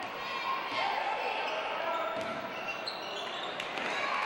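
Basketball dribbled on a hardwood gym floor, a few sharp bounces heard over the steady chatter of the crowd in the gym.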